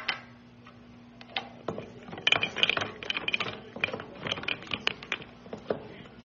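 Golden retriever puppy lapping water from a drinking glass: quick, irregular wet clicks and small clinks of tongue and muzzle against the glass, sparse at first and busier from about two seconds in.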